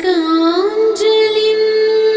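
A woman singing a Telugu Hanuman devotional hymn with instrumental accompaniment. Her line dips in pitch early on, then rises into one long held note with a slight waver.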